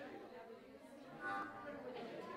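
Indistinct murmur of several people talking, with one louder voice breaking through briefly a little over a second in.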